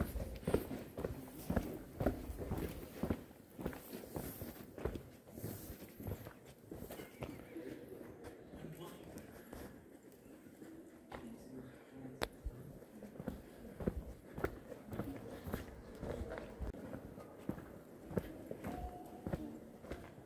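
Footsteps walking on a paved trail, with the faint voices of other people talking.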